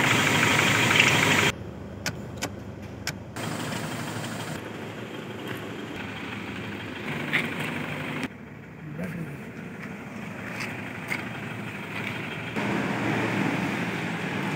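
Toyota Innova's 2.5-litre diesel engine idling steadily. It is loud for the first second and a half, then drops to a fainter running sound, with a few sharp clicks about two to three seconds in.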